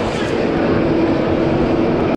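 Apollo's Chariot roller coaster train moving through the station: a steady mechanical rumble with a held note that grows stronger about half a second in.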